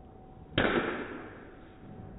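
A golf club striking a ball at a driving range, from another golfer's swing: one sharp crack about half a second in, fading away over about a second.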